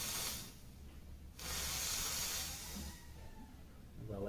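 A person exhaling a large cloud of vapour after a drag on a vape: a short breathy puff at the start, then a longer hiss of about a second and a half near the middle.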